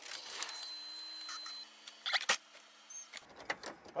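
A steady low hum from the car, a few even tones that cut off suddenly about three seconds in, with a sharp click a little after two seconds.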